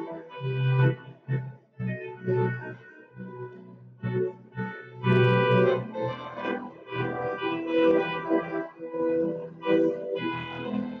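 Organ music: held chords that change every second or so, growing fuller and louder about five seconds in.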